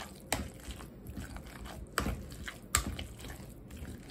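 Wire potato masher pressing boiled potatoes in a stainless steel pot: soft squishing with a few sharp clinks of the masher striking the pot, three of them louder than the rest.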